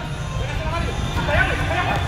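Men's voices shouting short calls across an indoor soccer pitch during play, over a steady low rumble.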